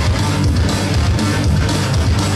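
Live punk rock band playing loud: distorted electric guitar, bass guitar and drums.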